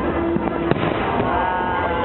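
A fireworks display: one sharp firework bang a little under a second in, over the chatter of a crowd.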